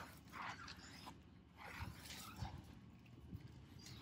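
Faint rubbing of a microfiber towel wiping a car tire's rubber sidewall, a few soft strokes.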